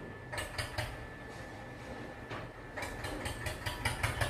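Marker pen writing on a whiteboard: short scratchy strokes and taps, a few in the first second and a quicker run in the last second or so.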